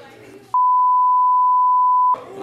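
Broadcast censor bleep: one steady, loud, high beep starting about half a second in and lasting about a second and a half, blanking out an obscenity the woman says to the judge.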